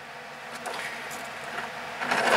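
Steady background hiss with a few faint rustles and clicks as rubber toy frogs are handled.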